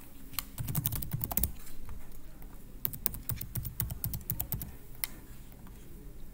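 Computer keyboard typing: a quick run of keystrokes, a pause of about a second, then a second, longer run, and one single click near the end, as a login ID and password are typed in.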